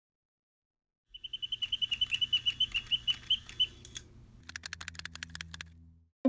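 A rapid series of high, squeaky chirps, about six a second, starts about a second in and lasts some three seconds. After a short pause comes a fast run of clicks, about ten a second, over a steady low hum, which stops just before the end.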